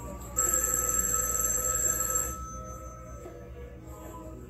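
Telephone bell ringing in the film's soundtrack: one ring, about two seconds long, that starts suddenly and then stops, signalling an incoming call.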